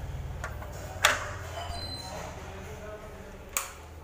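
Two sharp clicks, the first and loudest about a second in, the second shortly before the end. A faint high ringing follows the first, over a low steady hum.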